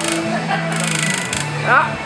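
Hazer's fan unit running fitfully: a steady low motor hum that drops in pitch partway through, with a rush of air that comes and goes. The hazer is cutting in and out.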